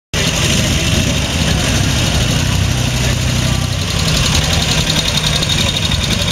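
Dnepr sidecar motorcycle's BMW-derived flat-twin engine running steadily at low revs as the bike rolls slowly along.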